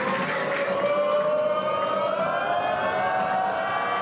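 A siren-like synthesised tone with several overtones, rising slowly and steadily in pitch, from wrestling entrance music.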